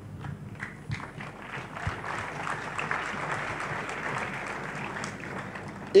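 Church congregation applauding, swelling after about a second and tapering off near the end.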